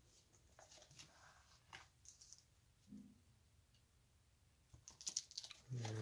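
Faint rustling and crinkling of plastic binder card-sleeve pages handled and turned by hand, with a few soft clicks and ticks near the end.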